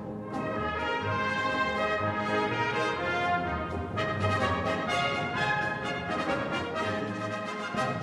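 A military band plays stately brass music, with horns and trumpets holding full chords; a new phrase enters about halfway through.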